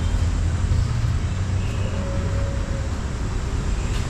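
Steady low background rumble of outdoor urban ambience, with no distinct events.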